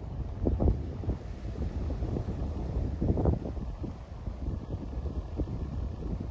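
Wind buffeting the microphone: a steady low rumble, with stronger gusts about half a second in and about three seconds in.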